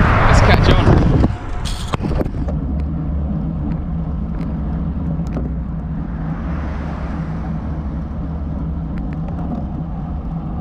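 A pickup truck passing close by, loud for about the first second and then dropping away suddenly, followed by a steady low rumble of road and wind noise from a moving road bike.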